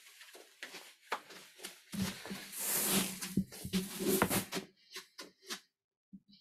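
Soft knocks and rustling as a barefoot person moves about on a yoga mat. In the middle comes a couple of seconds of breathy, rustling sound with a low voiced hum in it, like a loud out-breath.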